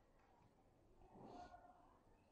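Near silence: room tone, with one faint, short sound about a second in.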